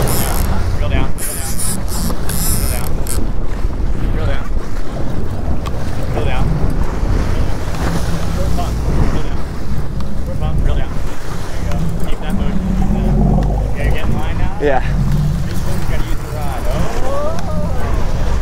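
Wind buffeting the microphone over water rushing and splashing against a fishing boat's hull, a steady rumbling noise. A few brief voices come in near the end.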